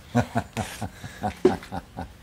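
A man laughing: a quick run of short voiced laughs, about eight in two seconds.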